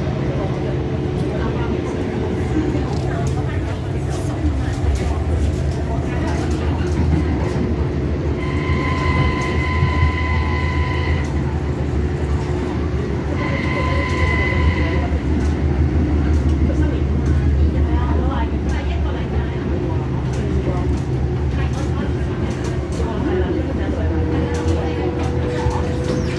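MTR Disneyland Resort Line M-Train electric multiple unit running between stations, heard from inside the car as a steady low rumble of motors and wheels on rail. A high-pitched tone sounds twice: once for about two and a half seconds a third of the way in, then again more briefly a few seconds later.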